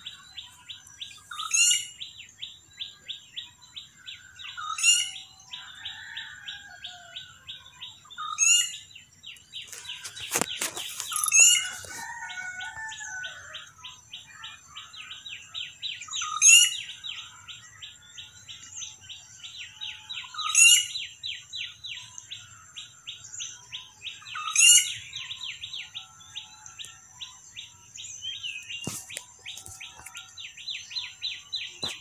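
Birds chirping in the open: one bird repeats a short, high, sweeping call every three to four seconds over a fast, steady chirring. A single sharp knock sounds about a third of the way through and another near the end.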